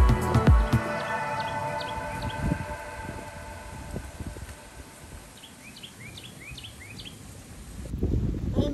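Background music with a beat fading out over the first few seconds, then a bird calling a run of short rising chirps against quiet outdoor ambience.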